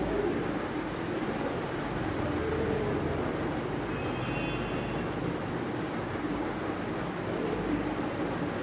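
Steady low background rumble and hum, with a short faint high tone about four seconds in.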